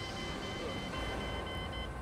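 A low steady hum under a faint, high-pitched electronic tone that pulses on and off.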